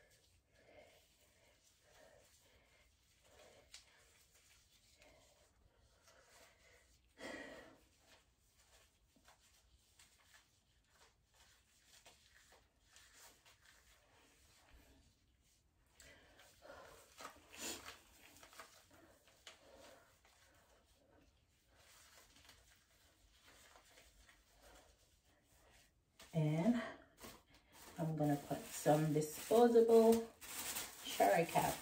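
Faint rustling and handling sounds of hands working and rolling up hair in a small room, with a brief soft vocal sound about a quarter of the way in. Near the end a woman's voice comes in, humming or talking softly.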